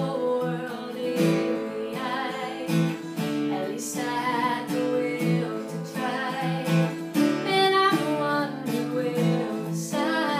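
Strummed acoustic guitar with a woman singing over it, a solo acoustic song.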